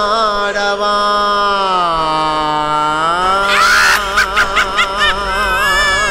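Tamil devotional song: a single voice holds a long chanted note, sliding down in pitch about two seconds in and back up about a second later. About four seconds in it breaks into quick pulsing ornaments, about five a second, over sharp percussive strokes.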